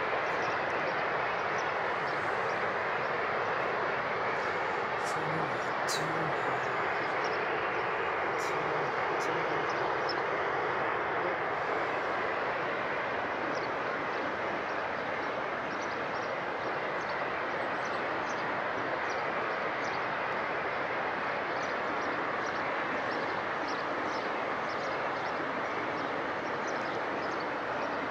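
Steady rushing noise of the Rhine Falls, a large river waterfall, with the water's hiss unchanging throughout.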